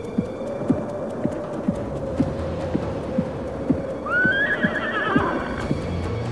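Horse sound effect: a whinny with a falling, wavering pitch about four seconds in, over steady low hoofbeats about twice a second and a held musical drone.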